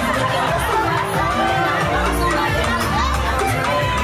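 Wedding guests whooping, shouting and cheering excitedly over dance music, with the music's bass coming in heavier about halfway through.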